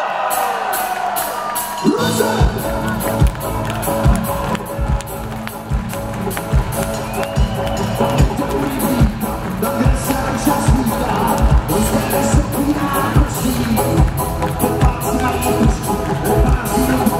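Live band playing on stage, with drums, electric guitars and banjo: the full band comes in about two seconds in with a steady beat. A crowd cheers underneath.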